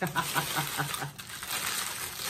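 A woman laughing softly in a quick run of short chuckles that die away after about a second.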